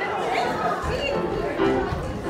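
Voices chattering over piano music in a large hall, with some low thuds in the second half.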